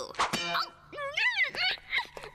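A sudden metallic clang that rings briefly a few tenths of a second in, followed by a voice.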